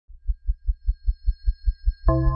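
Opening of a show's intro music: a low, even pulsing beat, about five pulses a second, under faint steady high tones.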